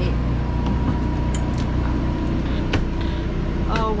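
Motorhome air conditioner running with a steady hum, and a few light knocks of movement about a second and a half and nearly three seconds in.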